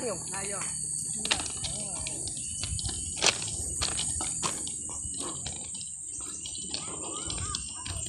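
Footsteps crunching irregularly on the stones of railway track ballast, over a steady high-pitched drone of insects.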